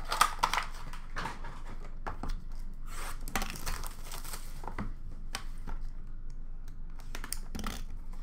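Hands handling and tearing open a cardboard Upper Deck Clear Cut hockey card box: irregular rustling, light clicks and taps of cardboard, with a longer stretch of tearing and rustling about three seconds in.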